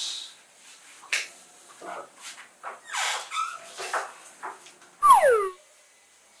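A few soft, breathy sounds, then about five seconds in a loud, short whining cry that slides steeply down in pitch.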